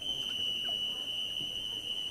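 Referee's whistle giving one long, steady blast: the signal for the swimmers to step up onto the starting blocks.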